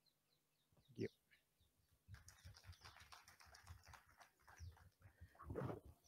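Near silence: faint outdoor room tone with a few faint high chirps and one brief faint sound about a second in.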